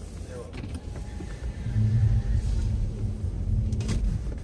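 Car running and rolling slowly forward over packed snow, heard from inside the cabin, with a low hum that grows louder about two seconds in.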